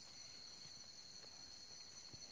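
Faint chorus of night insects: a steady high-pitched trilling, with a second, higher call that repeats in short pulses about once a second.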